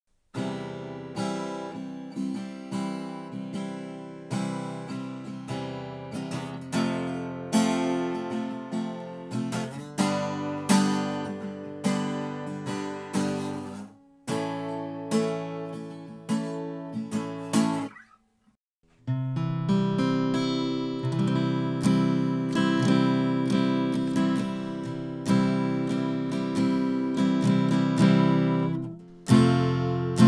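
Tribute Guitars TRI-7SCE steel-string acoustic guitar, chords strummed with a pick and left to ring and fade. The playing breaks off into a second of silence about two thirds of the way in, and changes abruptly just before the end.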